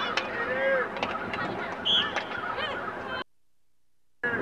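Geese honking, many short calls one after another, with a few sharp clicks among them; the sound cuts off abruptly to silence about three seconds in.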